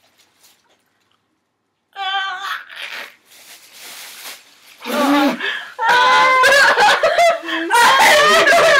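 A few seconds of near silence while the girls chew. Then a short high squeal, plastic bags crinkling, and several girls bursting into laughter and shrieks that grow loud and continuous in the last three seconds, in reaction to a moldy-cheese flavoured jelly bean.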